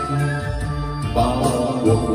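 Karaoke backing music playing through a home karaoke speaker system, with new notes coming in about a second in.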